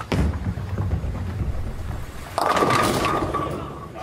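A bowling ball rolling down a wooden lane with a low rumble, then about two and a half seconds in the crash of the ball hitting the pins and the pins clattering, fading toward the end.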